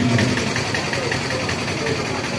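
An engine running steadily at idle, with a faint, even ticking about seven times a second.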